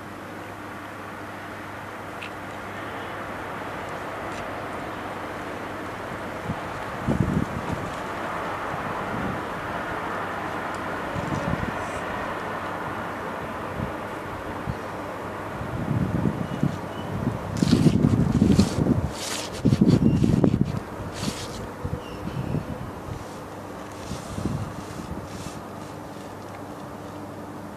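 Wind buffeting the microphone in irregular low rumbling gusts, heaviest a little past the middle, over a steady low hum.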